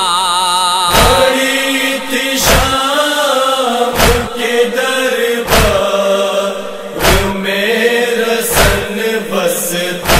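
Nauha lament chanted by voice in a slow, wavering melody. Rhythmic chest-beating (matam) thuds keep time, about one every second and a half.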